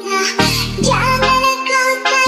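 Indonesian DJ remix music with heavy bass: deep bass notes that start and stop in short blocks under a high, processed sung vocal line.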